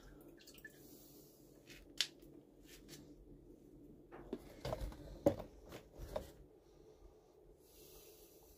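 Small water sounds, drips and light splashes with a few sharp clicks, as soaked boilies and a pop-up are lifted out of a water-filled glass tank by hand. There is a single click about two seconds in, and most of the activity comes between about four and six seconds.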